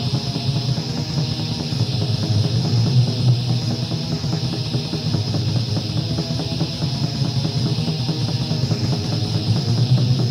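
Raw black metal from a 1995 demo recording: distorted electric guitars and fast drums in a dense, unbroken wall of sound.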